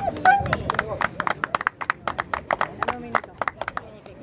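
Scattered hand clapping from a small outdoor audience, a quick irregular patter of individual claps that starts about half a second in and thins out near the end.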